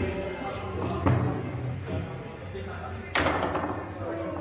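Foosball table in play: the ball and the rods' players knocking sharply against the table, with the loudest knock about three seconds in.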